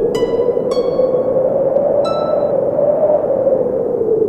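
Relaxing instrumental music: a few sparse plucked harp notes ring out near the start and about two seconds in, over a wind-like whoosh that slowly rises in pitch and then falls.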